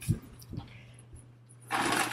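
A steady low hum with two soft, low thumps in the first half second, then a brief rustle near the end.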